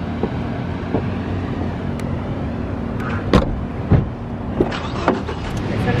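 Car engine idling with a steady low hum while people climb into the car: a series of knocks and thumps, the two loudest around three and a half and four seconds in.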